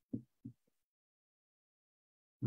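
Near silence, broken by three faint, short, low thumps within the first second.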